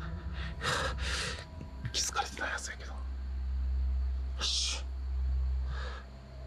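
A man speaking in hushed, breathy bursts, with three short whispered phrases over a steady low rumble.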